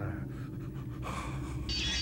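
A man panting hard after a struggle, with voice beginning near the end.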